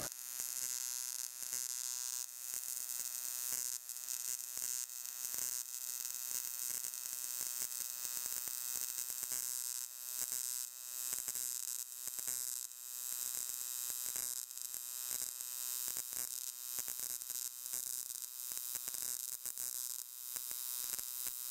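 AC TIG welding arc on aluminium, at 100 amps with a 120 Hz AC frequency and 20% electrode-positive balance: a steady buzz with fine crackling over it.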